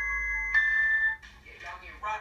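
Music from a comedy vine compilation playing through a tablet speaker: held notes, with a new, louder note about half a second in. Then, from a little past the middle, a quieter stretch of mixed voice and sound from the video.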